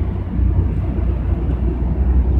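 Steady low rumble of outdoor background noise, strongest in the deep bass, with no speech.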